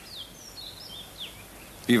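Small birds chirping faintly: a few short, high chirps over a low steady background hiss, with a man's voice starting at the very end.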